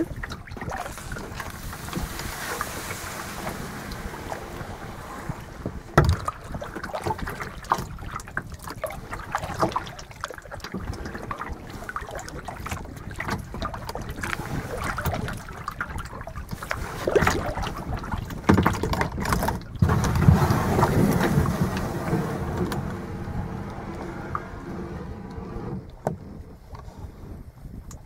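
Kayak being paddled on a lake: water splashing and dripping off the paddle, with irregular knocks, the sharpest about six seconds in.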